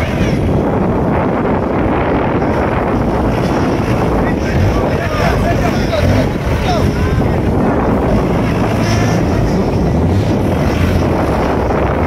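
Off-road buggy engine running under load as the buggy crawls over a dirt mound into a muddy rut, with wind on the microphone and faint crowd voices about midway.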